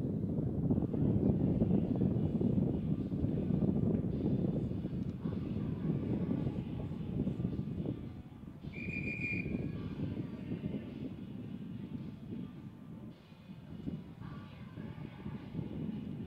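A low, uneven rumbling noise that eases off about halfway, with a brief high steady tone about nine seconds in.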